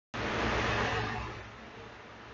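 Steady microphone hiss with a low electrical hum, starting abruptly and fading down over about a second and a half to a quieter floor, as the recording settles.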